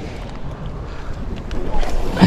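Wind rumbling on an action-camera microphone by the sea, with a few faint clicks and a louder rush near the end.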